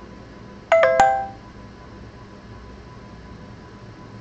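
A short chime of a few quick, bright notes about three quarters of a second in, dying away within about half a second, with a sharp click as it sounds.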